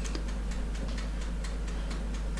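Faint light ticks at a fairly even pace, a few a second, over a low steady hum.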